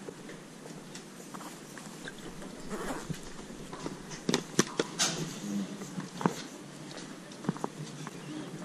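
Footsteps on stone paving in a narrow alley over a low street background, with a cluster of sharp clicks around the middle and a couple more near the end.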